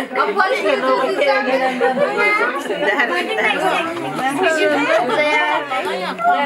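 Several women talking over one another: lively overlapping chatter.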